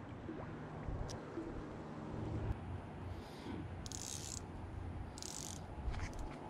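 Fly line swishing through the air as the fly rod is cast: three short hisses about a second apart, a little past the middle, over a faint steady background.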